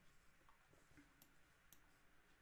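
Near silence: room tone, with two faint clicks in the second half.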